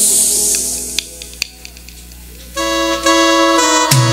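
Live Christian band music led by an electronic keyboard with an organ-like sound. The music thins out about a second in to a brief lull with a couple of clicks, then sustained keyboard chords come back in about two and a half seconds in.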